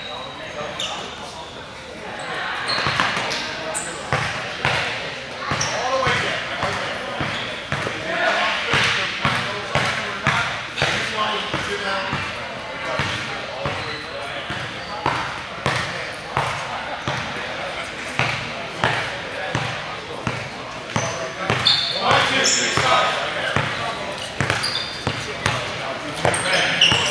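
Indistinct talk from players and coaches in team huddles, echoing in a large gym, with a basketball bouncing on the hardwood floor now and then.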